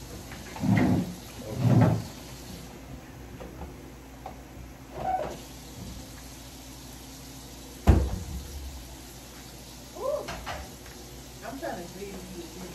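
A kitchen cabinet door shutting with a single sharp bang about eight seconds in, among short bursts of voices.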